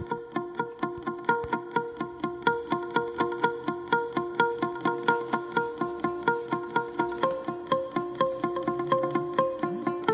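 Background music: plucked-string notes repeating in a quick, even pulse, about four or five a second.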